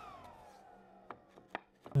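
Table saw motor and blade spinning down after being switched off: a fading whine that falls steadily in pitch. A couple of short, light knocks follow as plywood pieces are test-fitted together.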